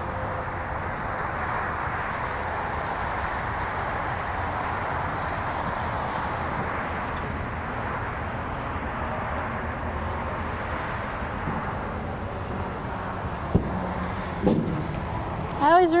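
Steady outdoor background rush, with a sharp click and then a knock near the end from boots on the aluminium trailer deck and ladder as someone climbs down.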